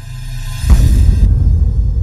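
Logo sting: a high shimmering swell followed, about three-quarters of a second in, by a sudden deep cinematic boom that rumbles on.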